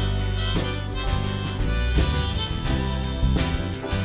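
Live band playing an instrumental passage: strummed acoustic guitar over electric bass guitar, with a drum keeping a steady beat of about two strokes a second.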